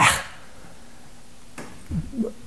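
The tail of a man's loud, excited shout of "Yeah!", fading within the first moment, then quiet room tone, with a short breath or vocal onset near the end.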